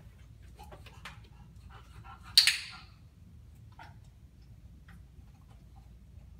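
A bulldog snorts once, a short, sharp burst about a third of the way in that dies away within half a second. Faint ticks and taps of her paws come before and after it as she moves onto the training platform.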